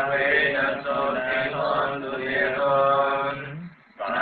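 Buddhist chanting in slow, drawn-out tones with long held notes, breaking off briefly near the end.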